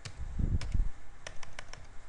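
Computer keyboard keys being typed: about eight quick, separate clicks, with a low dull thump under the first few about half a second in.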